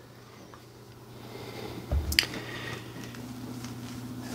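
Handling noise from a Neewer GM27 tripod fluid head being panned by its handle: mostly quiet, with a soft thump about two seconds in and a sharp click just after it.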